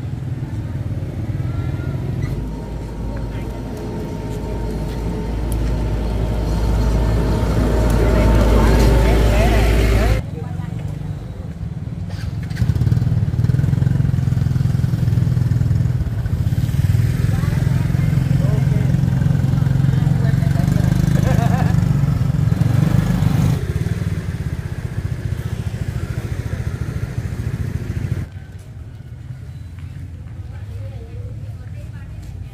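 Motorbike engines running close by, with people talking. The engine sound swells over the first ten seconds, then cuts off abruptly, comes back as a steady low hum, and drops away sharply near the end.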